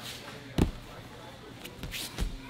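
Bare feet and bodies on a foam grappling mat: one heavy thud about half a second in, then a couple of lighter slaps near the end.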